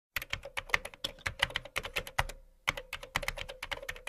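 Keyboard typing sound effect: rapid key clicks, about seven a second, with a short pause a little past the middle, over a faint steady hum.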